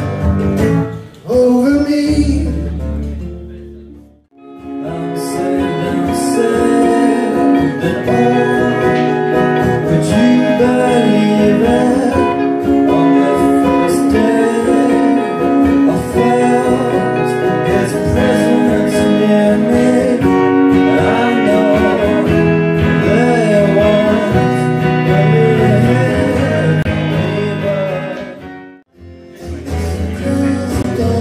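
Live guitar music with a singer: acoustic and electric guitars under a sung vocal line. The music drops out briefly about four seconds in as one song gives way to another, and drops out again just before the end.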